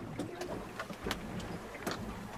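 Background noise in the cabin of a small sailing yacht under way: a faint low rumble with three light clicks spread across it.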